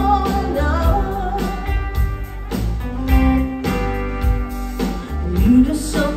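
Live pop-rock band music with a woman singing into a microphone over a strong bass and steady beat, with some guitar.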